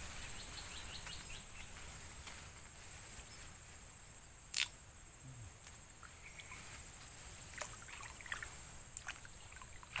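Quiet stream-side ambience: faint sloshing of water as a man wading in a small stream works a fishing net by hand, under a steady faint high whine. A few sharp clicks sound, the loudest about four and a half seconds in.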